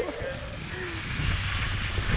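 Skis sliding over packed snow, with wind rushing over the camera microphone, getting gradually louder toward the end.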